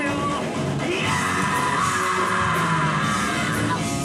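Live rock band playing, with a long held shout from about a second in that breaks off near the end.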